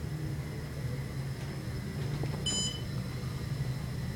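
Otis hydraulic elevator car descending, a steady low hum of the ride. A short high beep sounds about two and a half seconds in as the car passes a floor.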